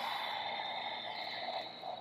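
A woman's long audible exhale, breathed out in one go for about two seconds, starting suddenly and stopping near the end.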